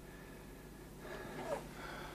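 Quiet room tone with a low steady hum, and a few faint soft sounds in the second half.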